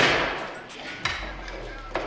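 Metal-on-metal strikes as a .50 cal cleaning rod knocks out the rear pin of a Mark 19 grenade machine gun: one sharp strike that rings out for about a second, then a lighter knock about a second in.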